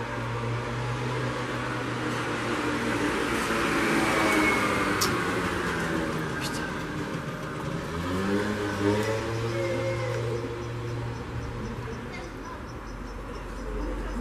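Street traffic: a vehicle passes, growing loudest about four seconds in and fading, then an engine's pitch climbs as another vehicle accelerates about eight seconds in, over a steady low hum.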